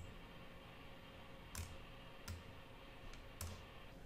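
Three faint computer mouse clicks, spaced irregularly, over quiet room tone.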